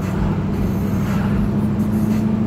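Car interior drone while driving: engine and road noise heard inside the cabin, a steady low hum.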